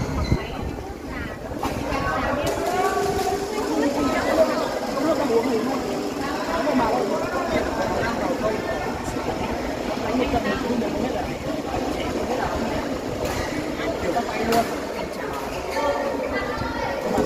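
Indistinct chatter of players and spectators in a badminton hall over steady hall noise, with a few sharp clicks scattered through.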